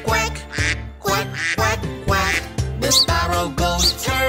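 Duck quacking, repeated over bouncy children's-song backing music with a steady beat. Two short high chirps come in near the end.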